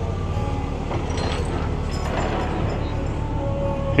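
Street traffic: a steady low engine rumble from vehicles on the road, with faint music in the background.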